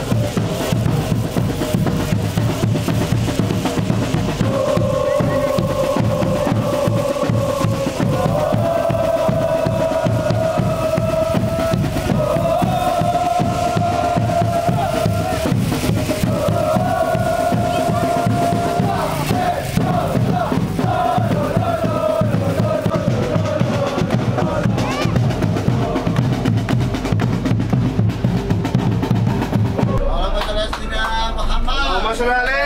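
Football supporters chanting in unison, a sung melody that moves to a new note every few seconds, over a steady pounding of bass drums.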